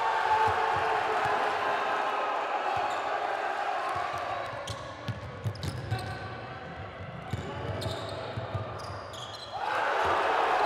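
A basketball being dribbled and bouncing on a hardwood court, with people's voices calling out in the arena.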